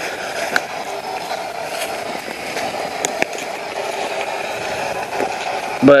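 Spirit box sweeping through radio frequencies: a steady hiss of radio static, broken by a few short clicks.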